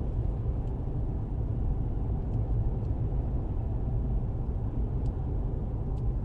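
Steady low rumble of road and drivetrain noise heard inside the cabin of a Mercedes-Benz E-Class driving along a road.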